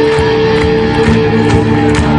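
Live rock band playing: electric guitars, bass and drums, with long held guitar notes over the beat.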